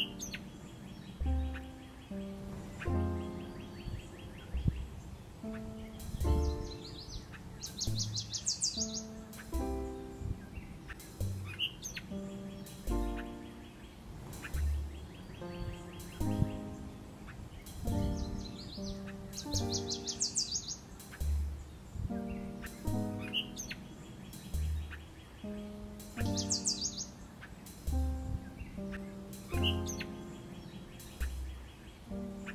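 Instrumental background music with repeating bass notes, over bird chirps and short rising calls. A high, fast bird trill recurs three times.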